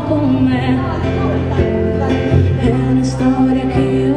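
Live acoustic band music: strummed acoustic guitars, bass guitar and cajón, with a woman singing.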